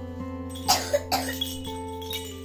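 Two short coughs, about half a second apart, over steady background guitar music.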